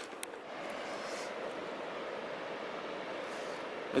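Steady outdoor background noise, an even hiss with no distinct events, and a faint click just after the start.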